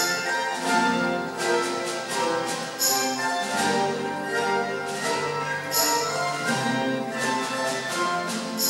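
Mandolin orchestra of mandolins, guitars and double basses playing a melody together, with a brighter accent about every three seconds.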